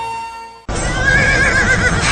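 Soft music fades out, then a sudden cut to a horse rearing and whinnying: one long, quavering call about a second in, over a loud low rumble.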